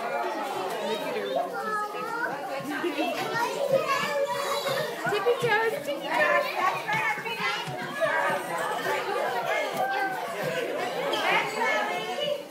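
A group of toddlers' voices chattering and calling out over one another in a large room.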